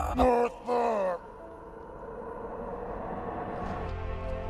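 Two short groans from a film character, each falling in pitch, in the first second; then a soft sustained music chord from the film score that slowly swells.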